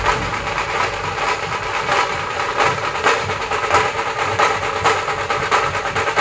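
Dhol-tasha drum troupe playing: a dense, fast run of drum strokes over a continuous clattering wash.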